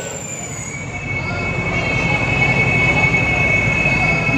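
Public-address microphone feedback: two steady high-pitched tones ringing together, starting about a second and a half in, over a low rumble that grows louder.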